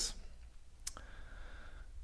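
A single sharp click a little under a second in, from a computer mouse, trackpad or key while scrolling through code, followed by a faint brief hum.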